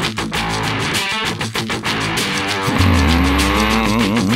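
Instrumental passage of a heavy rock band song: a choppy, rhythmic stretch, then about three seconds in a heavy sustained bass note comes in under warbling, gliding guitar tones.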